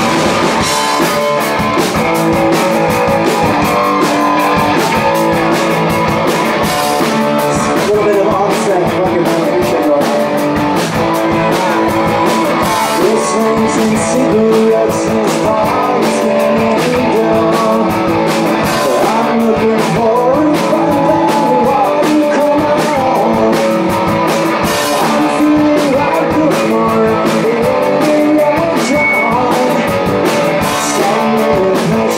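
Live rock band playing a song: electric guitars, bass and drums, with a male lead vocal.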